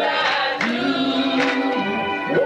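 Male gospel group singing in harmony with electric guitar accompaniment, voices holding long notes.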